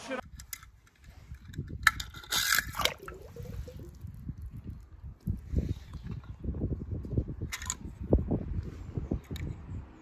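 Wind buffeting a handheld microphone beside a swimming pool, an uneven low rumble, with light water sloshing. A short burst of hiss comes about two and a half seconds in, and a briefer one near the end.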